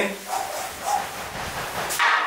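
Aerosol scent spray hissing in a long continuous burst, sprayed into the air.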